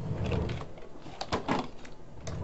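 Rummaging on a desk: things being shifted and handled, with several light knocks and clicks around the middle.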